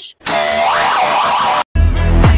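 The Roblox gravity coil sound effect, a springy sound whose pitch wobbles up and down for about a second and a half. Near the end it gives way to bass-heavy electronic music.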